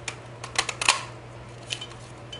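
EK Success paper punch pressed down through a strip of card stock: a quick cluster of sharp clicks as the punch cuts, about half a second to a second in, with another single click near the end.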